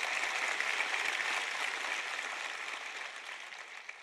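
Large audience applauding, the clapping dying away gradually over the last couple of seconds.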